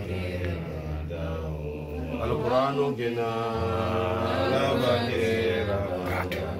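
Chanted Quranic recitation in Arabic: one voice intoning long, held melodic notes that slide slowly between pitches.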